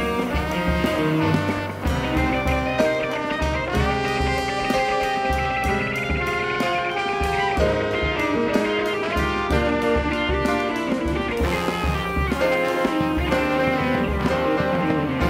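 Live band instrumental passage: trombone playing held notes over electric guitar, keyboards and a drum kit keeping a steady beat.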